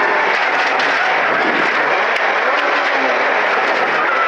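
VAZ 2108 rally car's four-cylinder engine running hard with tyre and road noise from a dirt stage, heard from inside the cabin at speed.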